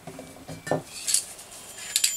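Several light clinks and taps, like hard objects being handled and set down on a work surface, spread across two seconds.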